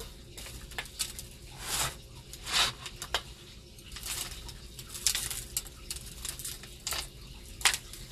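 Dry powder sprinkled by hand onto a disposable aluminium foil tray: a soft, scattered patter with light foil crinkles and a few brief rustling swishes and small clicks.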